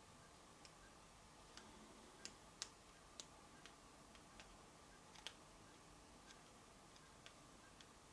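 Near silence: room tone with a dozen or so faint, irregularly spaced ticks.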